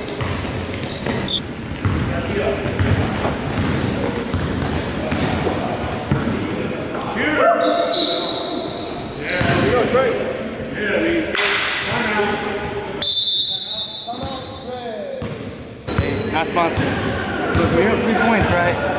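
Basketball game on a hardwood gym floor: the ball bouncing, sneakers squeaking, and players' voices calling out, echoing in the large hall.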